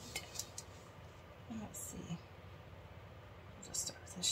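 Faint, half-voiced muttering from a person, with a few short soft ticks and hisses near the start, the middle and the end.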